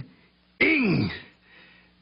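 A character's voice making one short wordless vocal sound a little over half a second in, its pitch sliding steeply down as it trails off.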